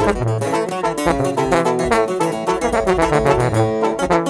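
Instrumental break of a regional Mexican corrido: fast plucked guitar runs over a steady bass line.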